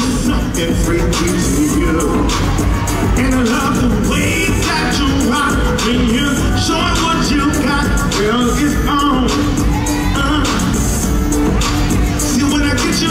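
Live southern soul performance: a male singer singing into a handheld microphone over loud amplified music, heard through the hall's PA.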